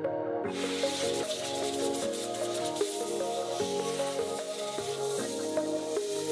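Background music, with a steady hiss starting about half a second in: compressed air being blown over the car's interior to clear liquid from between buttons and dashboard parts.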